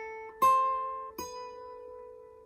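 Fingerstyle acoustic guitar playing notes at the 9th fret. The loudest note is plucked about half a second in and another just after a second, and each is left to ring and fade.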